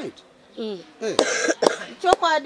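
Speech in short phrases, with a single cough about a second in.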